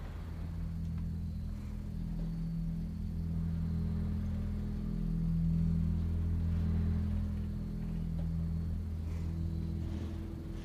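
A low, dark drone of horror film score: several sustained low notes that overlap and shift slowly. It swells in the middle and then eases back.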